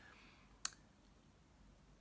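Near silence: quiet room tone, broken once by a single short, sharp click about two-thirds of a second in.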